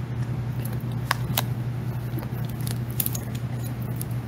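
A steady low electrical hum with a handful of sharp, separate clicks, a pair about a second in and a few more around three seconds.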